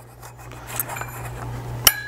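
Light metallic rubbing and handling of an aluminium LED downlight module and trim, then one sharp metal click near the end as the Phillips screwdriver tip meets the screw head.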